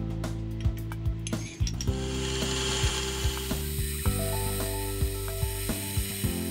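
Background music with sustained chords, over light clicking and ticking; from about two seconds in, a steady high hiss joins in.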